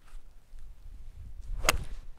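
A 6-iron striking a golf ball on a full swing: one sharp click about a second and a half in, over a faint low rumble.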